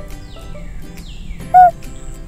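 Light background music with repeated falling glides. About one and a half seconds in comes a single short, loud bird-call sound effect, the cartoon owl's call.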